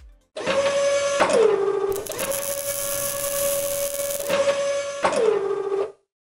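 Logo-animation sound effect: a mechanical, motor-like whirring hum that drops in pitch about a second in, rises again, and drops once more near the end, with a loud hissing rush in the middle. It cuts off suddenly just before the narration resumes.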